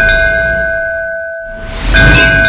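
Title-card sound effect: a struck, bell-like metallic ring over a deep boom, fading away, then struck again with another boom near the end.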